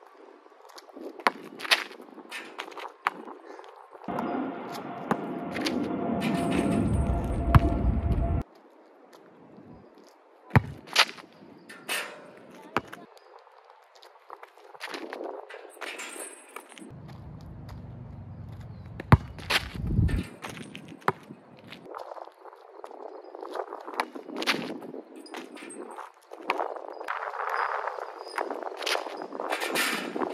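A basketball bouncing on an asphalt court and knocking against the hoop during repeated dunk attempts: scattered sharp knocks, a few much louder than the rest. Two stretches of low wind rumble on the microphone, each a few seconds long and cutting off suddenly.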